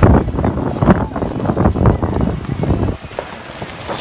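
Wind buffeting a phone's microphone in irregular gusts, easing off about three seconds in.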